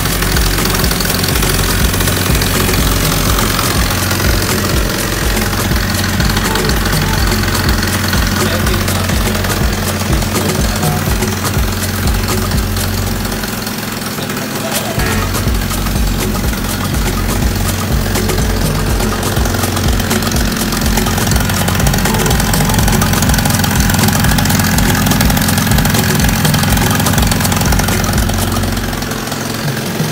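Yamaha Jog scooter engine, set up to 70cc, idling steadily. Its level sags briefly about halfway through and again near the end.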